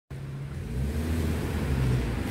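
Road traffic: the low hum of vehicle engines, growing louder as vehicles approach.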